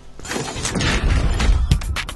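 TV channel ident sting: a swelling noisy sound effect over a low rumble, breaking into sharp electronic drum hits near the end.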